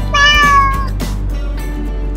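A single cat meow, under a second long and dipping slightly in pitch toward its end, over background music.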